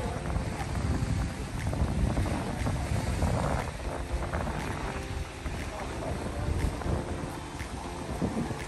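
Wind buffeting the microphone: a steady low rumble that rises and falls in gusts.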